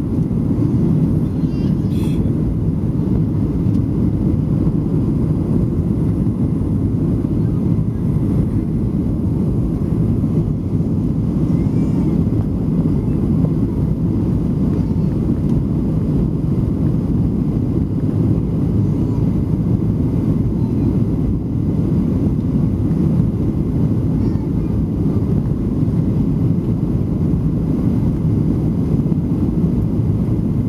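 Steady low rumble of engine and airflow noise inside the cabin of a Southwest Airlines Boeing 737 on descent, heard from a window seat over the wing. A brief click about two seconds in.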